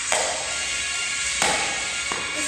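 Two sharp knocks about a second and a half apart, the second louder, as upturned dog bowls are set down and shuffled on a hard floor, over steady background music.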